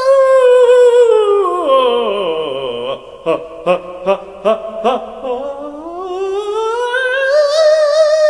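Unaccompanied male operatic voice singing a continuous cadenza. It slides smoothly down into its lowest register, sounds about five short accented notes at the bottom, then glides back up to a high held note with vibrato near the end.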